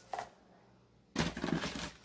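Rustling and scraping in a cardboard shipping box as a can is pulled out of it, a rough, crackly noise filling the second half.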